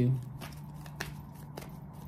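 Tarot cards being shuffled and handled: a run of faint, light card clicks, with one sharper tap about a second in.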